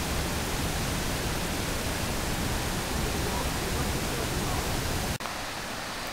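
Waterfall and white water rushing steadily over rocks, a full, even hiss. About five seconds in it cuts abruptly to a quieter, more distant rush of the river.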